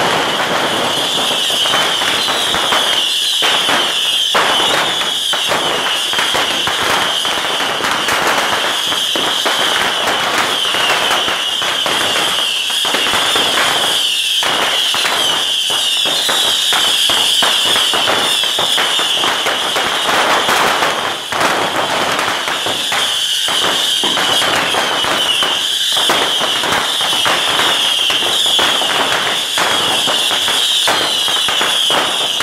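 A dense barrage of beehive bottle rockets (Yanshui fengpao) firing continuously: rapid, overlapping pops and bangs under a constant high-pitched hissing whistle.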